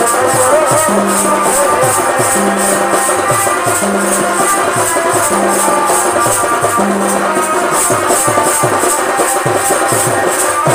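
Sokhi Nach folk dance music: drums with pitch-bending strokes, a fast, steady jingling percussion beat, and a wavering melody line above, all keeping a repeating rhythm.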